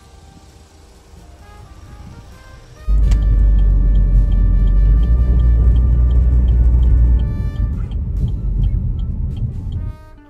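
Background music throughout; about three seconds in, a loud low rumble of a car driving, heard from inside the cabin, joins it. The rumble eases a little after a few seconds and cuts off suddenly at the end.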